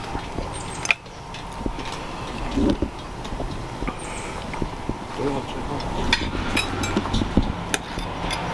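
Camera handling noise with a few clicks and knocks, one sharp click about a second in, over a steady low hum, with brief murmured voices.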